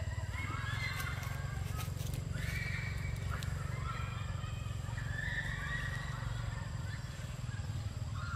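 Macaques giving repeated high-pitched squealing calls, several in a row with slight rises and falls in pitch, over a steady low rumble, with a few sharp clicks in the first half.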